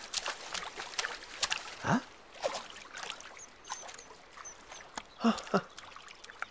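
Water splashing and trickling around a small swimmer paddling through a river, with scattered light splashes. There is a short vocal grunt about two seconds in and a brief 'ooh, huh' near the end.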